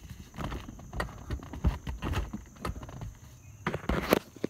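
Irregular knocks, clunks and rustles of handling as a car's front seat is pushed forward, with no motor running.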